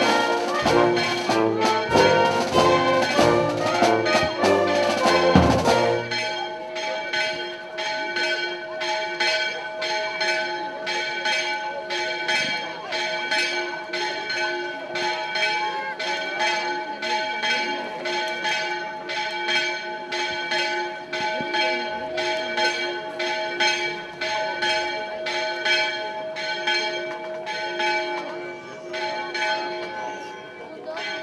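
A brass band with drums plays until about six seconds in and then stops. Church bells then ring on their own in quick, even strikes at several fixed pitches.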